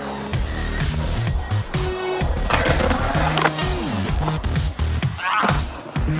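Skateboard wheels rolling and carving on the smooth concrete of a skate bowl, swelling louder twice, with music playing over it.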